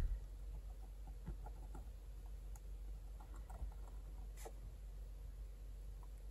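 Metal nib of a dip calligraphy pen scratching faintly on watercolour paper in short strokes, with one sharper tick about four and a half seconds in.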